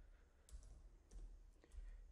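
Three faint keystrokes on a computer keyboard, about half a second apart, against near silence.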